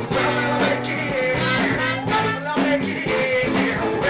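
Funk-rock band playing: a singer over guitar and drums with a steady beat.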